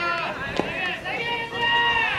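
Players' voices shouting and calling out across the baseball field, several overlapping, with one sharp knock about half a second in.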